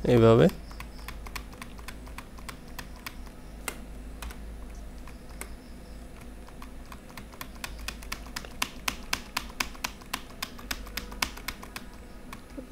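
Computer keyboard and mouse clicking in scattered, irregular clicks that come thicker in the last few seconds, over a faint steady low hum.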